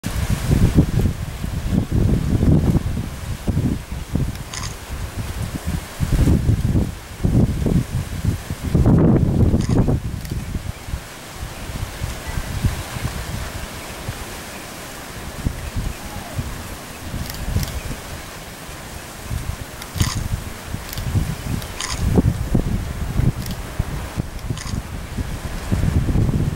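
Wind buffeting the microphone in irregular gusts, a low rumble that swells and fades, with a few faint ticks.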